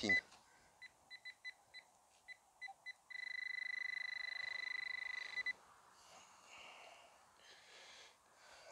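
Metal-detecting pinpointer sounding on a target in a soil plug: a string of short beeps that come closer together, then one steady beep held for about two and a half seconds as the tip sits over the metal, a small buckle.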